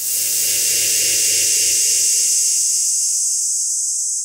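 A loud, steady, high-pitched hiss with a faint low hum beneath it. It swells in just before and cuts off abruptly just after the picture changes.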